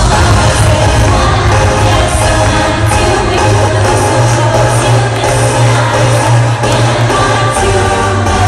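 Live electronic dance-pop music played loud through an arena PA, with a heavy bass line and a steady beat, and a singer's voice over it, heard from the audience.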